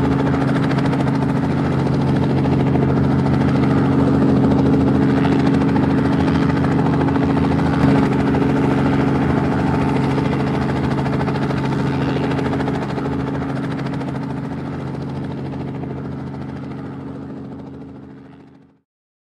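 Multirotor camera drone's propellers whirring steadily at close range, with one brief knock about eight seconds in, then fading out near the end.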